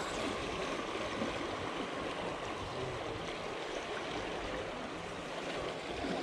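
Fast river water rushing and swirling against the rocks at the bank, a steady wash.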